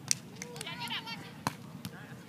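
A volleyball slapped by hand twice: a sharp smack just after the start and a second, softer one about a second and a half later, over distant voices.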